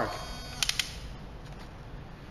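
RFID locker lock's latch pushing back out automatically after the timed unlock: a faint motor whine, then three quick clicks a little over half a second in.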